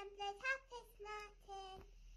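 A child's voice singing a few short, high, steady notes, quietly.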